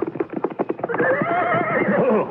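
Radio-drama sound effect of a horse's hoofbeats clip-clopping. A horse whinnies over them from about a second in, with a wavering pitch.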